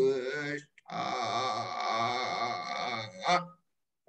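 A man chanting Vedic Sanskrit verses in an even recitation, phrase by phrase with a short pause for breath; the voice stops about three and a half seconds in.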